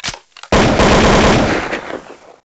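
A sudden loud burst of harsh, crackling noise starts about half a second in, holds for about a second and fades near the end.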